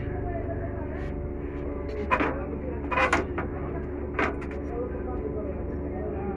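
Short clicks and taps from hands fitting wire leads onto capacitor terminals in a metal amplifier chassis. There is a light tap about a second in, louder clicks around two and three seconds in, and one more just after four seconds, over a steady low hum.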